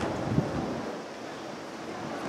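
Outdoor stadium ambience while sprinters hold still in their blocks before the start: a steady background hush with wind on the microphone. A single soft low thump about half a second in, then slightly quieter.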